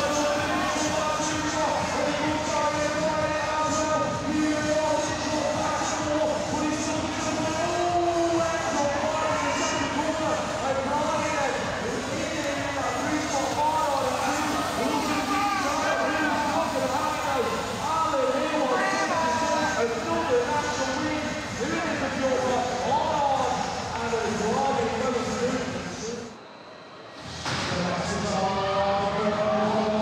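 Background music with a voice-like melody throughout, dropping away briefly for under a second near the end.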